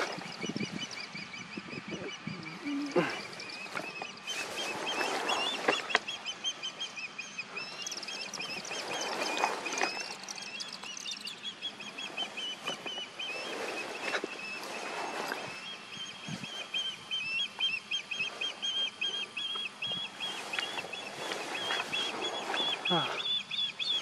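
Ospreys calling from their nest: a long run of rapid, high whistled chirps, the territorial call given at someone near the nest. Short bursts of rustling come and go beneath it every few seconds.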